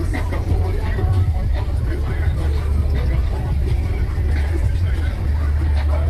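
A vehicle engine running steadily, a low, even rumble, with people talking in the background.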